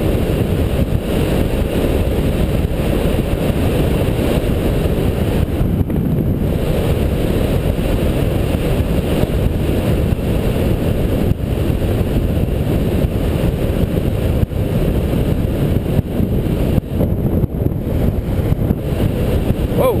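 Wind rushing hard over the camera's microphone on a fast downhill run at about 40 mph: a steady, deep, loud rush with a few brief dips and faint knocks from the road.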